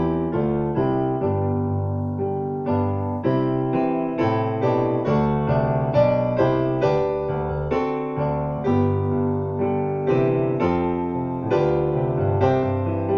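Digital stage piano played in steady, evenly paced chords with a melody on top, each note struck cleanly and held.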